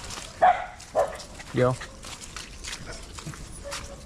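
A dog barking twice in quick succession, short sharp barks about half a second apart.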